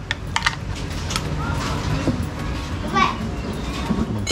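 Background chatter of voices, like children playing, over steady outdoor noise, with a few light knocks early on.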